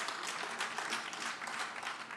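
Audience applauding, a steady clapping of many hands that eases slightly near the end.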